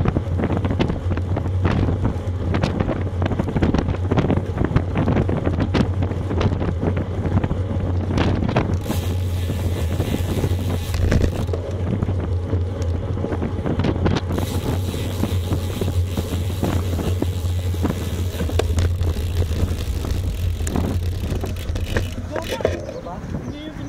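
Wind buffeting the microphone of a bike-mounted Garmin VIRB action camera, over a steady low rumble of road bike tyres and frame vibration on asphalt. The rushing hiss grows stronger about nine seconds in and again from about fourteen seconds.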